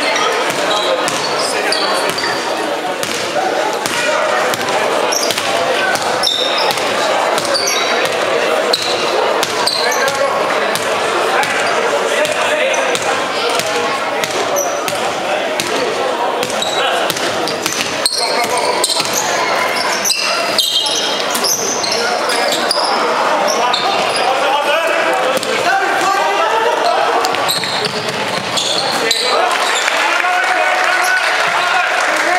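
Live basketball game in a large gym: a basketball bouncing repeatedly on the hardwood court as it is dribbled, with players and spectators calling out throughout.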